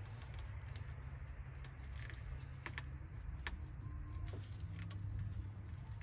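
Faint scattered clicks and rubbing from gloved hands twisting a rubber coolant hose off the fitting of a Miata's air valve, the hose having just broken free and begun to turn. A steady low hum sits underneath.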